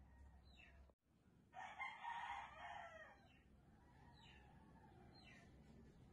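A rooster crowing once, a call of about a second and a half starting about a second and a half in. Short falling chirps from a smaller bird repeat about once a second in the background.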